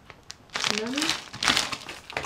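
Plastic food-packaging bag crinkling as it is held up and turned in the hands, in bursts from about half a second in until near the end.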